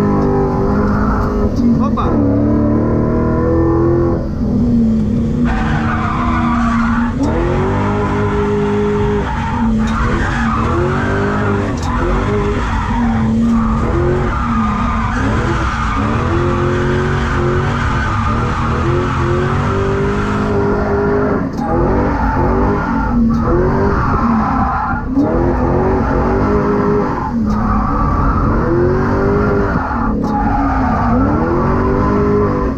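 BMW E39 535i's V8 engine heard from inside the cabin while drifting, its revs climbing and dropping again every second or two, with tyres squealing and skidding on the concrete.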